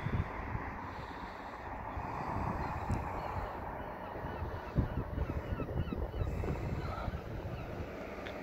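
Outdoor wind buffeting the microphone, with faint short bird calls in the middle stretch.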